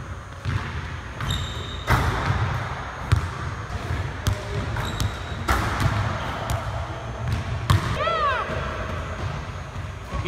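Basketball bouncing on a hardwood gym court, a string of sharp impacts ringing in the large hall, with a brief squeak about eight seconds in.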